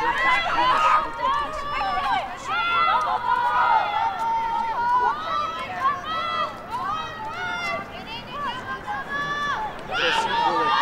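Several high women's voices shouting and calling out over one another without a break, the indistinct on-field calls of women's lacrosse players during play.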